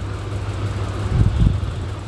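Eggs frying in hot oil in a steel kadai, a steady sizzle over a constant low hum, with a brief low bump about a second and a quarter in.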